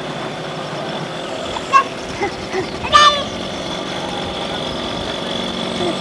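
A small moped engine running as the moped rides up close, its low steady note coming in about halfway through. Brief voices call out over it, the loudest a short, sharp cry about three seconds in.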